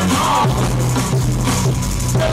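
Live funk band playing an instrumental groove: drum kit keeping a steady beat over a sustained bass line, with keyboards.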